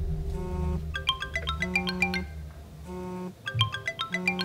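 A smartphone ringtone: a short, bright melody of mallet-like notes that repeats about every two and a half seconds, over a low hum that fades out about halfway through.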